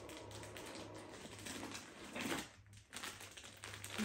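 Faint rustling and small clicks of packed items and plastic clip-lock bags being handled and lifted out of a suitcase, a little louder about two seconds in.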